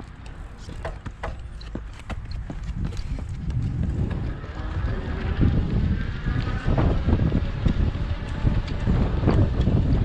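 Running shoes slapping the pavement in quick steps as a runner sets off. From about four seconds in, wind buffets the microphone, a gusty rumble that grows louder as the camera moves.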